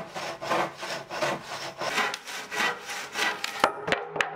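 Handsaw cutting through wood in steady back-and-forth strokes, about two to three a second, with a couple of sharp knocks near the end.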